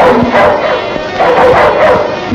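A dog barking loudly in two bouts, one at the start and another about a second in.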